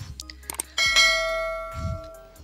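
Bell-chime sound effect of a subscribe-button animation: a couple of faint clicks, then a single bright ding just under a second in that rings on and fades out over about a second.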